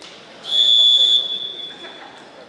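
A referee's whistle: one loud, steady, high blast lasting under a second, fading out over the next second. It stops the action in the wrestling bout.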